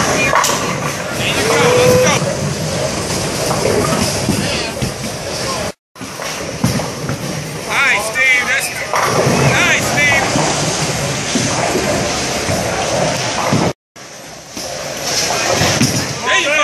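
Bowling alley noise: bowling balls rolling down the lanes and crashing into pins, over a steady background of voices and music. The sound drops out briefly twice, around six and fourteen seconds in.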